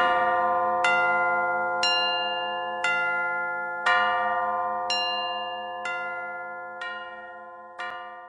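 Tuned bells struck about once a second, eight strikes in all, each ringing on and overlapping the next, the whole slowly fading out at the close of the song.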